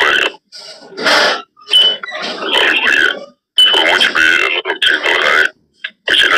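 Voices talking in short bursts with brief pauses between them.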